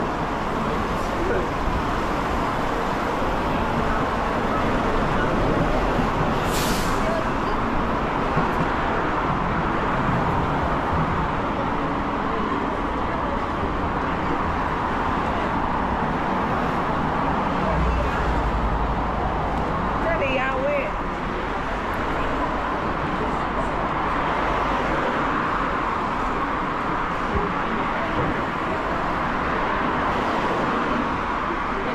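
Busy city street at night: steady traffic noise from the road alongside, with the voices of passing pedestrians. A short hiss about six or seven seconds in.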